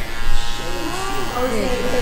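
Electric hair clippers running with a steady buzz while they are used on a toddler's hair, with voices talking over them.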